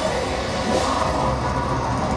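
Live heavy metal band playing: distorted electric guitar, bass and drums in a dense, unbroken wall of sound.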